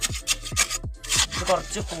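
A steel mason's trowel scraping and jabbing through wet concrete in a wooden block mould, with a rasping burst about a second in. Background music with a fast, steady beat plays under it.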